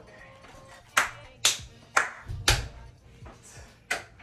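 Hand claps: four sharp claps about half a second apart starting about a second in, then one more near the end, over faint background music.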